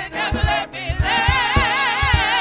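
Gospel praise team of several voices singing into microphones, holding a long note with wide vibrato from about a second in, over a steady low beat.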